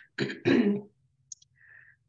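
A woman clearing her throat, two short rasps in quick succession.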